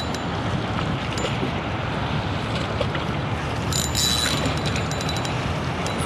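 Steady wind noise on the microphone, with a short buzz from a spinning reel about four seconds in as a hooked schoolie striped bass pulls drag.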